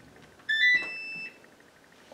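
Gorenje WaveActive washing machine's control panel beeping: a quick rising chime of a few short notes, the last held for about half a second. It answers the programme dial being turned while three buttons are held, the key combination for the machine's service test mode.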